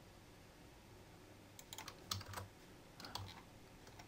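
A few faint computer keyboard keystrokes, in a small cluster around halfway and another shortly after three-quarters of the way through.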